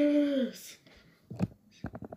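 A boy's voice finishing a phrase, its pitch falling off, then a brief breathy hiss and a handful of short, sharp pops in the second half.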